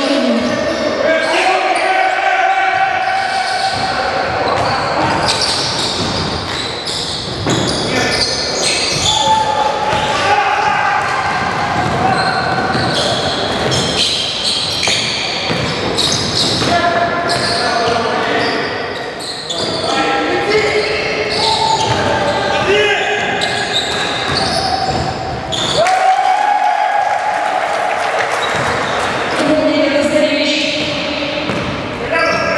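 Game sounds in a large sports hall: a basketball bouncing on the wooden floor as it is dribbled, mixed with players' voices calling out across the court.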